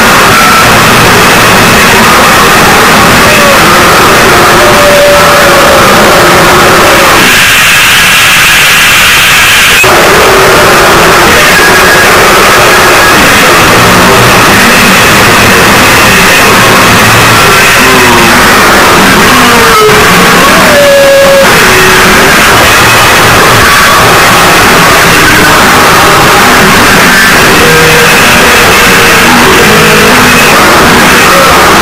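Harsh noise music: a loud, dense wall of distorted noise with no steady beat, with squealing tones that slide in pitch now and then, and the low end dropping away for a few seconds about a third of the way in.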